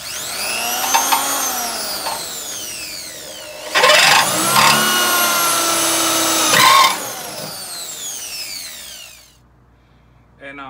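Electric drill running with its bit in the steel chassis rail, drilling out a marked spot to free the factory right-side engine mount bracket. It grows much louder and harsher for about three seconds in the middle as the bit bites. Then the motor winds down with a falling whine and stops near the end.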